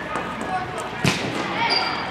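A volleyball bouncing on a gym floor, one sharp bounce about a second in, over background voices.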